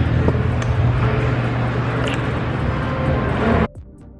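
Electric hand dryer running in a restroom: a steady rushing blast of air over a low motor hum, cutting off abruptly near the end.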